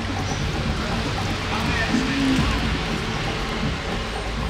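Background music under a steady hiss of room noise, with a short snatch of a voice about two seconds in.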